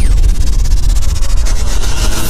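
Loud cinematic intro sound effect: a steady noisy rush with a fast, fine crackle over a deep bass rumble.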